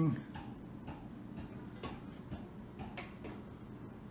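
Faint, scattered ticks and taps of fingers pinching and tugging a newly installed string on a cigar box guitar, stretching it upward at points along the neck so it holds its tuning.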